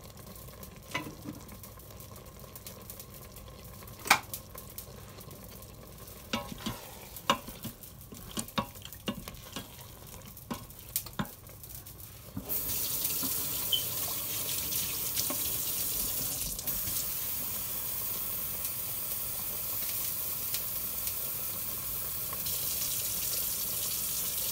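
A slotted wooden spatula knocking and scraping in a stainless steel pot, in scattered clicks for about twelve seconds. Then a water tap is turned on and runs steadily, filling a bowl.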